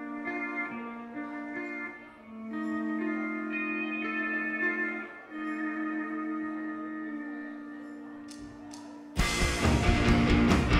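Live rock band opening a song: slow, held chords change every second or two. About nine seconds in, the full band with drums comes in suddenly and much louder.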